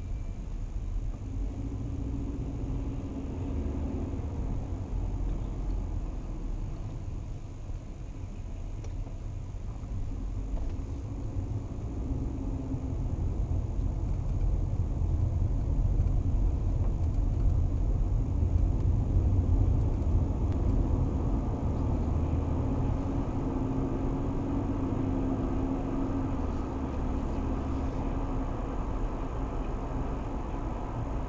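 Mercedes-Benz car's engine and tyre noise heard from inside the cabin: a steady low rumble. It gets louder partway through as the car accelerates out of slow traffic.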